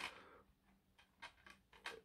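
A few faint plastic clicks as a Blu-ray disc is pressed onto the hub of a mediabook's disc tray, otherwise near silence.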